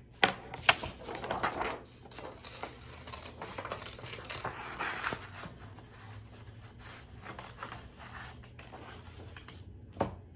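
Scissors snipping construction paper, with paper rustling as it is handled and turned. Two sharp clicks sound just after the start, and many short crisp snips follow.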